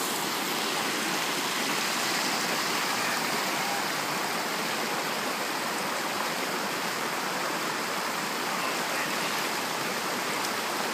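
Shallow stream rushing over rocks, a steady even rush of water.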